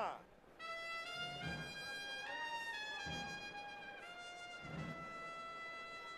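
Brass band playing a slow march: long held trumpet notes that step up and down between pitches, with a low beat about every second and a half.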